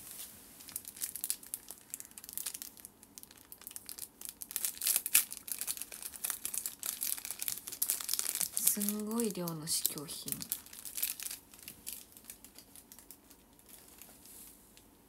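Plastic skincare sample sachets crinkling as they are handled and sorted through, a dense run of small crackles. A short murmured voice sound comes about nine seconds in.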